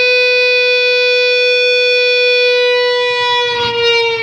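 Distorted electric guitar, a Dean ML-style, holding one long sustained note at steady pitch, which sags slightly flat near the end.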